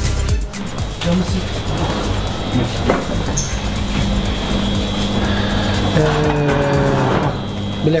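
Background music with steady held notes, with low voices underneath.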